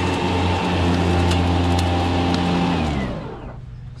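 Battery-powered Ego Z6 zero-turn mower's electric blade motors running with a steady hum and whoosh. About three seconds in they are switched off and spin down, the pitch falling as they fade.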